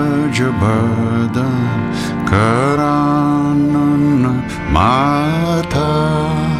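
Kirtan mantra chanting: a male voice sings long, sliding held notes over a steady harmonium drone.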